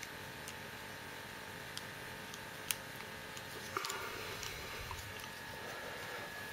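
Faint, scattered clicks of small plastic toy parts being handled and fitted together, with a sharper click about two and a half seconds in and a short run of clicks near four seconds, over a low steady hiss.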